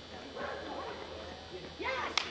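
Short calls from a person's voice, twice: about half a second in and again near the end. They are typical of a handler cueing a dog through an agility course, and there is a steady hum of a large hall underneath.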